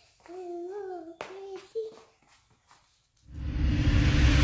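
A young girl singing a short, wavering phrase, then a brief pause. About three seconds in, loud music cuts in with a rising wash of noise and deep bass.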